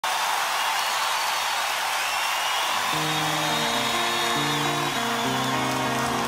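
Concert crowd cheering, and about three seconds in a solo guitar begins picking a slow arpeggiated song intro, one note after another, over the continuing crowd noise.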